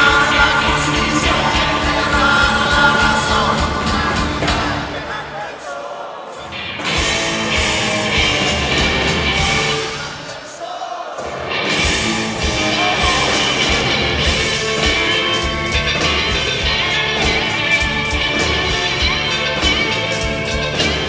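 Live rock band playing with electric and acoustic guitars, drums, keyboard and lead vocals. The bass and drums drop out briefly twice, about six and eleven seconds in, before the full band comes back in.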